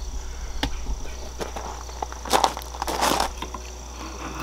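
Knife working a stick of resin-rich fatwood: a few light clicks, then two short rasping scrapes a little past halfway.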